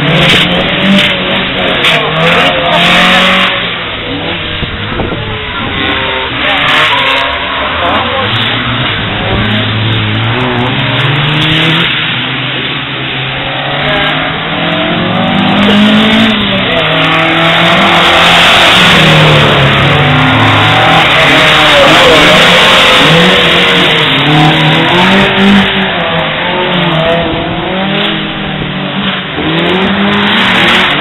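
Ford Escort drift cars' engines revving hard, rising and falling again and again as the cars are thrown sideways through the corners, over a steady hiss of noise.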